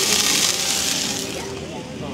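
Burger patties sizzling on a hot flat-top griddle, a steady hiss that fades out about a second and a half in.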